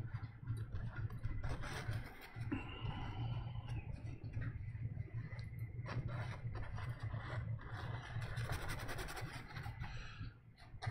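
Paintbrush strokes scratching over an oil-painted canvas, irregular and uneven, over a steady low hum.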